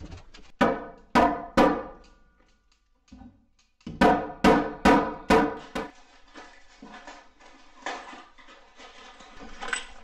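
Hammer blows on the new sister joist lumber, each a sharp ringing strike: three in the first two seconds, a short pause, then a run of five about two a second, with fainter blows near the end.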